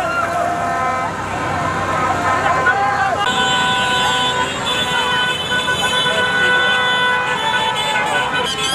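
A street crowd shouting and chanting; about three seconds in, several car horns start sounding together and hold on as a steady mixed chord over the crowd noise.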